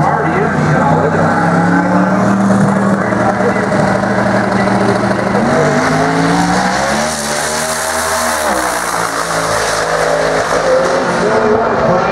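Drag car's engine running at the start line, then launching about six seconds in: the pitch climbs and falls away as the car makes a full-throttle quarter-mile pass.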